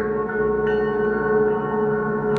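Electronic acousmatic music over loudspeakers: a sustained, bell-like drone of many steady ringing tones stacked together, with higher tones joining about half a second in.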